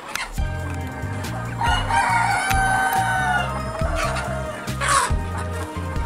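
A rooster in a flock of native deshi chickens crowing once, one long call of about two seconds starting about two seconds in, amid other chicken calls. A short sharp burst about five seconds in, with background music underneath throughout.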